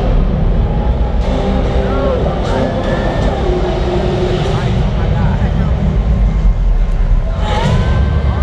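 Arena sound system booming with a deep, rumbling bass during a darkened pre-game light show in a packed basketball arena, with crowd noise and an echoing PA voice over it. The sound swells near the end as flames flare over the court.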